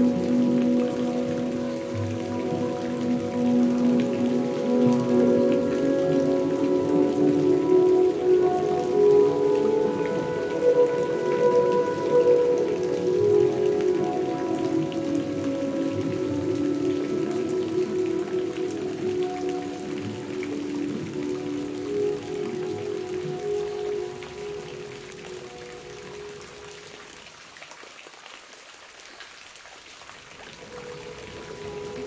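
Rain falling steadily under slow ambient music of long held tones. The music fades down over the last few seconds, leaving the rain more exposed.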